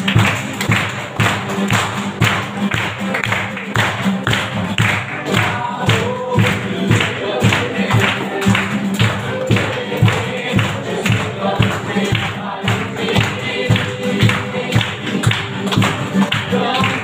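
Live worship band playing: two acoustic guitars strummed under a steady beat on a cajón, with a voice singing over them.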